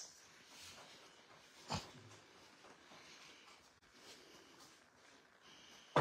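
A single sharp click of a pool cue striking the cue ball on a small sinuca table, about two seconds in, followed by a few faint knocks of balls rolling and touching.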